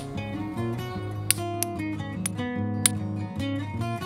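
Acoustic guitar background music, with a few sharp clicks of a hammerstone striking a stone flake as it is retouched; the two loudest strikes come about a second and a quarter in and near three seconds in.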